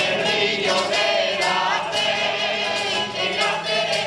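A rondalla's voices singing a habanera together, with guitars and other plucked string instruments strumming underneath. The singing comes in at the start and eases toward the end as the strings carry on.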